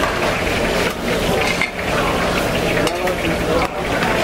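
A flat knife spreading and scraping swordfish fish paste across a metal board, over a steady sizzle of deep-frying oil.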